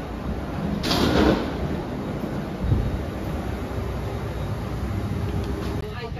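Steady low rumble inside a boarding jet bridge, with a brief loud whooshing rush of noise about a second in and a single low thump a little under three seconds in.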